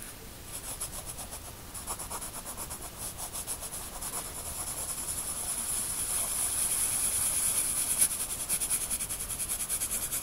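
Pencil scratching on paper in rapid back-and-forth shading strokes, darkening a solid band, growing louder after the first few seconds.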